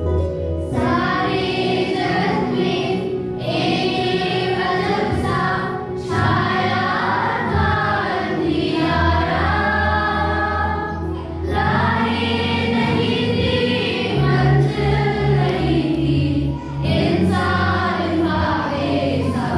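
A children's choir singing a Hindi Christian song together, over an accompaniment that holds sustained low notes.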